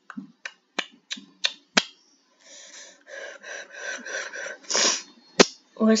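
Computer mouse clicking: six sharp clicks about a third of a second apart, then a couple of seconds of breathy hiss, and one more click just before speech begins.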